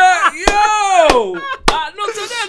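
A man laughing hard, one long high-pitched laugh falling in pitch, cut by three sharp knocks about half a second apart.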